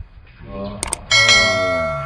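A bell-like chime strikes about a second in and rings on in several steady tones, fading slowly. Under it a drawn-out sound falls steadily in pitch.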